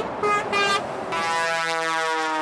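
Lorry air horn on a passing truck: two short toots, then one long blast from about a second in, a driver honking in support of the roadside farmers' protest.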